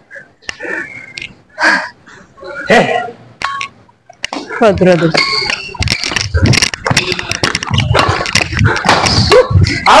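Players' voices and calls on an indoor badminton court during a rally. From about halfway in, sharp clicks of racket strokes on the shuttlecock come thick and fast among the voices.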